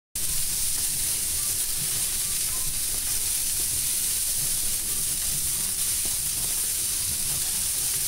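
Steady sizzling hiss of pork strips hanging in a wood-fired smoker, their fat sweating out and dripping, with a low, uneven rumble underneath.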